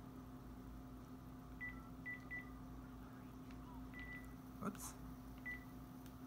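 Faint, short, high electronic beeps from a smartphone being operated to place a call: about five single beeps spread over a few seconds, one a little longer than the others, with a soft click near the end.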